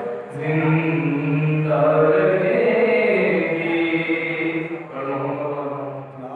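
A young man's solo voice chanting an Urdu noha, a Muharram lament, in long held notes with no instruments.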